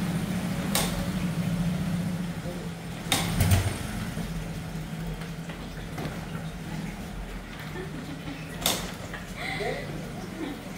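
Small motorcycle engine idling steadily. A few sharp clicks or knocks sound over it: about a second in, a louder pair with a low thump around three seconds in, and another near the end.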